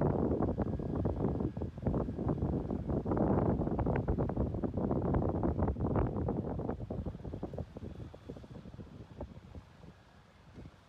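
Wind buffeting the microphone in uneven gusts, dying away over the last few seconds.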